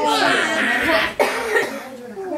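A child's breathy, unvoiced laughter for about a second, then a short word and more laughing.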